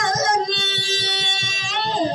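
Dayunday song: a woman singing to her own acoustic guitar, holding one long high note over fast, even strumming.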